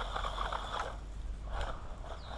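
Small electric RC truck running at a distance on dirt and gravel: a faint motor whine that fades after about a second, with a few short crackles of tyres over loose ground.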